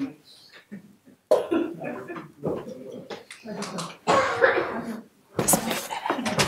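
Indistinct voices close to a courtroom microphone, broken by coughing: a noisy cough about four seconds in and a louder, sharper one near the end.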